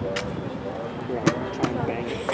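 People talking indistinctly, with a few short, sharp clicks.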